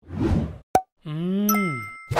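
Cartoon-style transition sound effects: a short swish, a sharp pop, then a pitched tone that bends up and slides down, with a bright ding over it.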